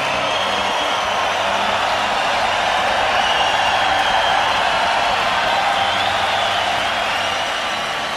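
A large arena crowd cheering and applauding steadily, with whistles rising and falling above the roar. A few faint low held notes sit underneath.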